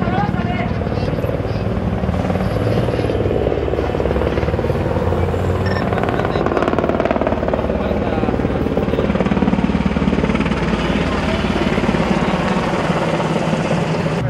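A helicopter flying low overhead, its rotor beating steadily and loudly, with indistinct voices of people around.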